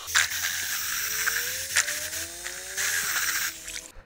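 A handheld power drill spinning a Hyde stir-whip mixer in a bucket of solid-colour stain, mixing it. The motor's whine rises slowly in pitch over a whirring, swishing noise, with a single click partway through, and it stops just before the end.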